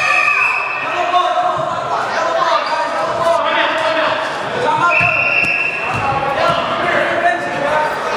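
A basketball bouncing and knocking on a gym's hardwood floor among the echoing shouts and chatter of young players and spectators. Two short, high squeaks, one at the start and one about five seconds in.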